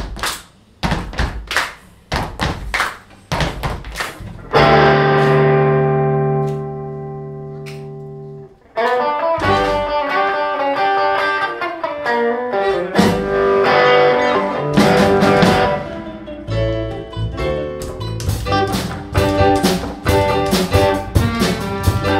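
Live rock band opening a song. First come sharp stop-time hits with the drums, then one long held chord rings out and fades for about four seconds. Near the middle the full band comes in at tempo, with electric guitar, bass, drums and violins.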